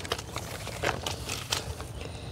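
Faint handling sounds as hands wrap a cloth measuring tape around a potted tree trunk: light scattered clicks and rustles, over a low steady rumble.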